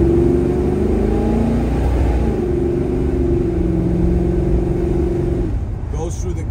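A 1972 Chevelle's 502 cubic-inch big-block V8, heard from inside the cabin as the car pulls away under power. The engine note shifts about two seconds in, holds steady, then drops away near the end.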